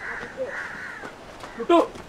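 Crows cawing in a series of hoarse calls. Near the end a person's loud voice cuts in.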